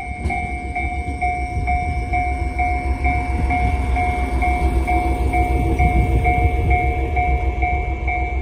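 JR Hokkaido H100-series diesel-electric railcar pulling out past the platform, its engine rumbling low and growing a little louder as it gathers speed. Over it, a two-tone warning bell rings steadily about twice a second.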